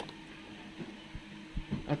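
Faint handling noises from hands moving over a laptop on a desk: a sharp click at the start, then a few soft knocks, over a low steady hum.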